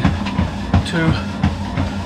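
Running footfalls thudding on a treadmill belt at a steady cadence of about three steps a second, over a steady low hum.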